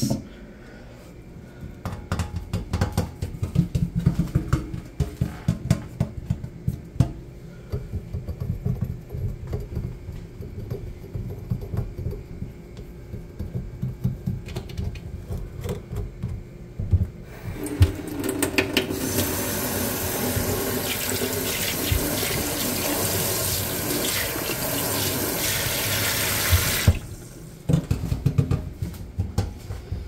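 Fingertips tapping and scratching on wooden cabinet doors. About halfway through, a kitchen faucet is turned on and water runs into a stainless steel sink for about ten seconds, then is shut off suddenly, and the tapping resumes.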